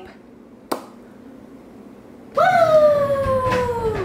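A single click, then about two seconds in a long, high-pitched voice-like cry that slides steadily down in pitch.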